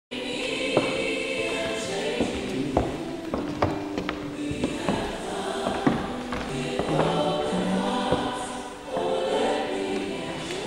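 A group of voices singing a slow hymn together with long held notes, with several scattered knocks and bumps close by.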